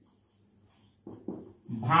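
Near silence, then a marker pen squeaking in a few short strokes on a whiteboard about a second in; a man starts speaking near the end.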